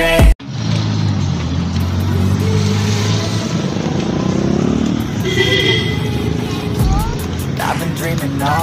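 Music cuts off abruptly at the start. Street traffic follows: a nearby motor vehicle's engine hums steadily under general street noise, easing off after a few seconds.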